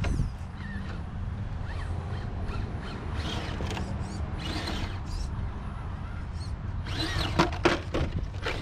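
Scale RC rock crawler working over rocks, with a steady low rumble and scattered scrapes, and a short loud clatter about seven seconds in as the truck tips onto its side.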